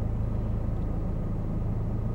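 Steady low hum of a car's engine idling, heard from inside the cabin.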